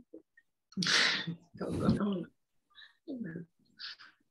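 Two short, loud bursts of a person's voice and breath, about a second and two seconds in, followed by fainter brief vocal sounds, heard over a video-call microphone.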